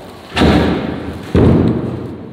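Two heavy thuds about a second apart, each with a short echoing tail.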